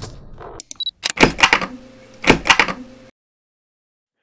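Sound effects from an animated logo intro: two loud hits about a second apart, each with a short rush of noise, over a steady low ringing tone. The sound cuts off suddenly about three seconds in.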